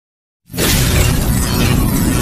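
Intro sound effect for an animated logo: silent at first, then about half a second in a sudden, loud, dense rush of noise with a heavy low rumble that keeps going.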